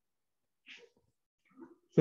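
Near silence, broken by two faint, brief sounds, one a little under a second in and another near the end.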